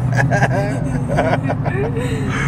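Inside the cabin of a 2020 Dodge Charger Scat Pack Widebody, its 392 (6.4-litre) HEMI V8 runs steadily with a low, even drone while the car is being driven.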